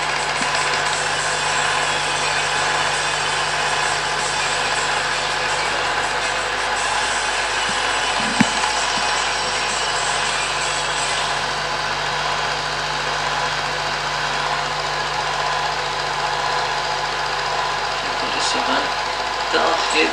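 Film projector running: a steady mechanical whir with a constant low hum, and a single click about eight seconds in.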